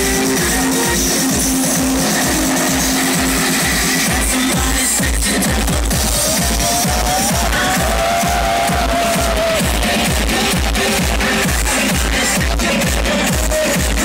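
Loud electronic dance music from a DJ's sound system, with a steady thumping bass beat; a melody line comes in about six seconds in.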